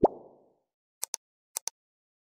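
Sound effects for a 'subscribe & like' animation: a short plop at the start, then two quick pairs of light click sounds about half a second apart.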